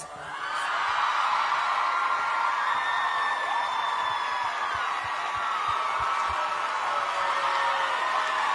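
Studio audience cheering, screaming and clapping, swelling up over the first second as the song stops and then holding steady.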